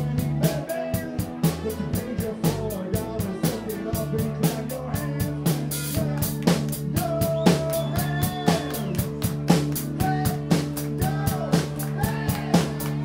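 A live rock band playing, with drums keeping a steady beat under electric bass and other pitched instrument lines. From about four seconds in, the bass holds a steady low note.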